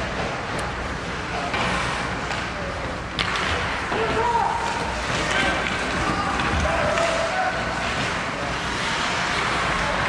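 Ice hockey game ambience in an indoor rink: indistinct shouting and chatter from players and spectators over a steady hiss of skates on the ice, with a sharp knock about three seconds in.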